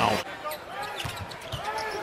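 Sound of a basketball game on a TV broadcast during a lull in the commentary: arena crowd noise and faint voices, with a few short knocks from the court.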